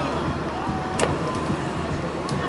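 Open-air rugby pitch sound: distant shouts from spectators and players over a steady low rumble, with one sharp click about a second in.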